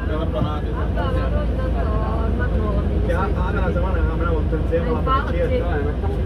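Steady low rumble of a bus engine heard from inside the bus, with passengers' voices chattering over it.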